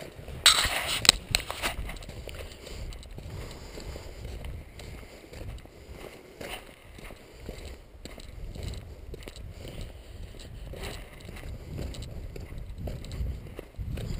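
Walking noise from a handheld camera: a steady low wind rumble on the microphone, with a loud burst of rustling about half a second in, then faint scuffs and rustles.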